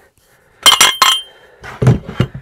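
Machined aluminium parts of a pneumatic flipper cylinder clinking together as the buffer-tank shell is pulled off and handled. Two ringing metal clinks come about two-thirds of a second and a second in, then a duller knock near the end.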